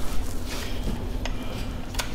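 Steady low background noise with a faint even hum, and a single light click about a second in.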